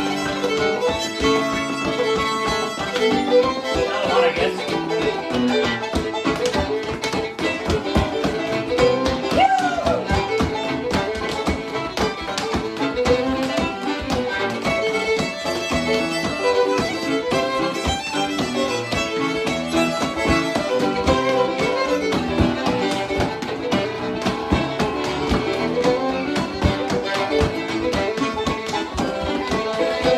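Cape Breton-style fiddle playing a fast dance tune with Nord stage-piano accompaniment, and the quick tapping of two stepdancers' leather shoes on a hardwood floor running through the music.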